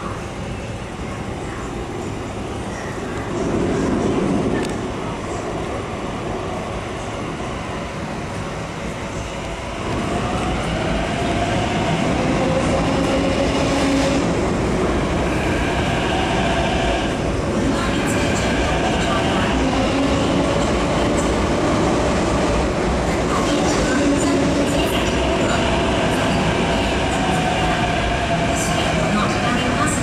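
MTR C-Train electric metro train coming out of the tunnel with a rising rumble. It grows louder about ten seconds in as it runs along the platform, its wheels clattering on the rails under a motor whine whose tones slide up and down as it moves past.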